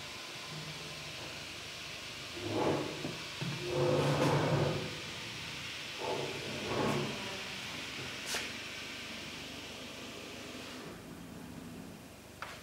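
Steady hiss of room tone, with a few soft, muffled indistinct sounds swelling and fading, and one sharp click about eight seconds in.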